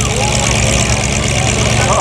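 Engines of several enduro stock cars running at low speed, a steady low drone, as the field rolls slowly under caution before a restart.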